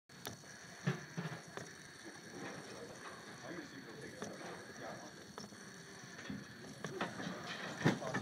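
Small solar-powered walking robot toy working its plastic leg linkages through its geared motor, giving irregular clicks and ticks.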